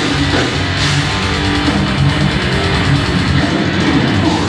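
Death metal band playing live: heavily distorted electric guitars over a full drum kit, dense and loud throughout.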